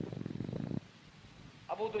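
A man's voice making a low, throaty rasp for under a second, then near quiet, and speech resumes near the end.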